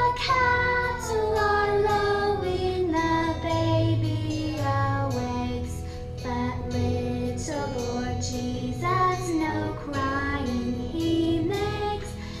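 Young children singing a song together in unison over a musical accompaniment with a steady bass.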